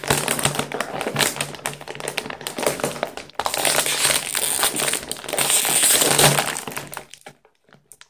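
A plastic potato chip bag being crinkled and pulled apart at its sealed top, a dense crackling that pauses briefly about three seconds in and stops shortly before the end.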